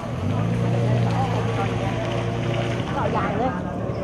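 A steady low hum that starts just after the beginning and stops about three seconds in, under the murmur of people talking.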